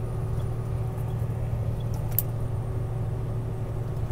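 Steady low drone of engine and road noise inside a vehicle cabin at highway speed, with a faint tick about two seconds in.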